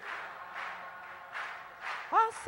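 Two soft breaths into a close-held handheld microphone, one near the start and one about a second and a half in, in a pause between sung lines.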